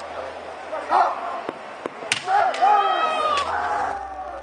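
Kendo sparring: several sharp clacks of bamboo shinai striking in the first half, then a long, drawn-out kiai shout near the end.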